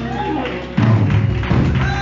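Live jazz quartet of tenor saxophone, piano, double bass and drums playing, with two heavy low accents about a second in and half a second later. A held high note with clear overtones starts near the end.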